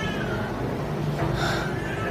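Two faint, short, high mewing animal calls, one about a second and a half in and another at the very end, over a low steady room hum.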